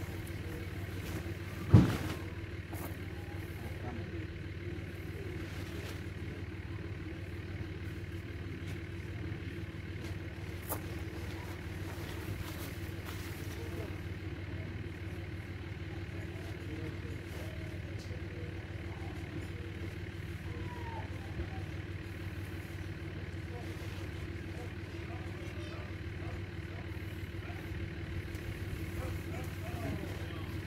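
A steady low mechanical hum, like an engine running, with a single sharp thump about two seconds in.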